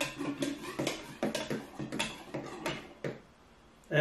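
Irregular clicks and spluttering from a plastic siphon tube as gassy, still-fermenting braggot starts to flow out of a glass carboy; the noises stop about three seconds in.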